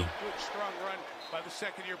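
Faint speech from the football game broadcast's commentary, playing at low level. A couple of short soft knocks come about a second and a half in.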